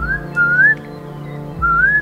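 Weka calling: three short rising whistles, the middle one loudest, over a steady musical drone.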